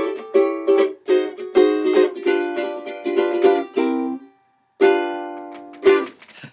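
Ukulele strummed quickly through jazz-sounding chords for about four seconds, a brief stop, then one chord left to ring and a last quick strum near the end.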